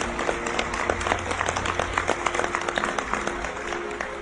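Audience applauding, a dense patter of many hands clapping, with soft background music underneath.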